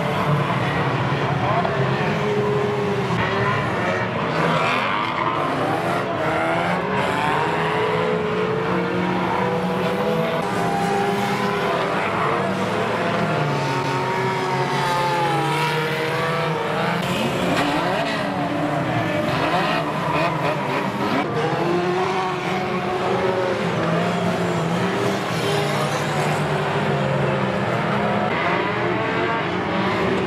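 Several unlimited banger racing cars' engines revving at once in a pile-up, many engine notes rising and falling over one another.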